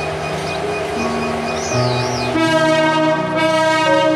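Background music playing; a little over halfway through, the Hyundai Rotem GT38AC locomotive's air horn starts, a loud multi-tone chord that holds on.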